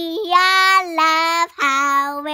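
A young girl singing a simple tune in a few long held notes, the last one lower.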